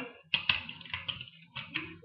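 Plastic Lego starfighter being handled on a hard countertop: a few short clicks and rattles of bricks under the fingers.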